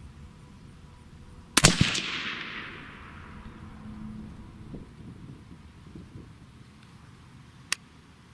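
Suppressed AR-15 in .223 Wylde firing a single shot, the report followed by a long echo fading over about a second and a half. A short sharp click near the end.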